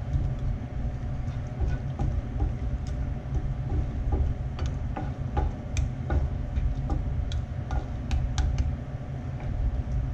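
Chicken stock and sherry vinegar simmering in a skillet of melted onions while a wooden spatula stirs and scrapes the pan, giving scattered sharp pops and clicks over a steady low rumble.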